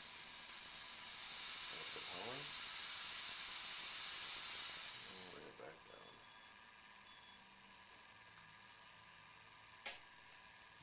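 High-voltage corona discharge of an ion lifter (electrokinetic 'flying capacitor') giving a steady loud hiss, which cuts off sharply about five and a half seconds in as the power goes and the craft settles. A single sharp click comes near the end.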